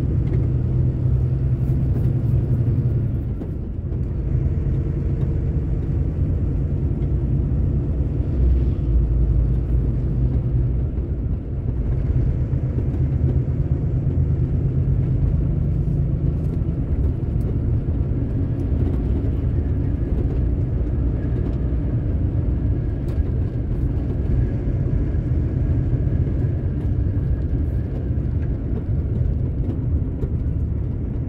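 Truck's diesel engine and road noise heard from inside the cab while driving, a steady low rumble whose engine note shifts a few times.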